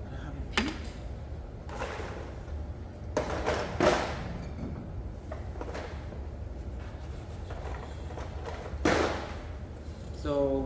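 A few scattered soft knocks and handling noises of clay pieces and tools being moved on a work table, the loudest about four seconds in and again near the end, over a steady low hum.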